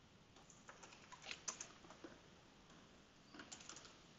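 Faint computer keyboard keystrokes and clicks: a scattered run of key presses in the first half, and another short run near the end.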